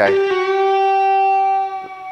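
Electric guitar string bent up in pitch to a G and held as one steady sustained note. It dies away just before the end.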